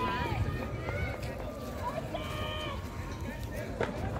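Distant, indistinct voices calling and shouting out in the open, over a low steady rumble, with one short knock near the end.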